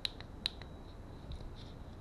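The centre push button of a Hysnox HY-01S helmet headset's rotating volume control clicking as it is pressed in: two sharp clicks about half a second apart near the start, then a few fainter ones.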